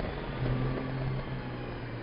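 Touring motorcycle engine running at road speed, a steady hum over wind and road noise, its note easing slightly lower after about a second.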